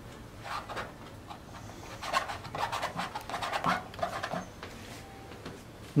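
Oil-painting brush dabbing and scraping paint onto a stretched canvas: a run of short, irregular scratchy strokes.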